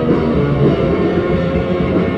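Hardcore punk band playing live, electric guitar and drums at full volume, captured on an audience recording.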